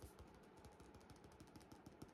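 Near silence with many faint, quick, irregular clicks.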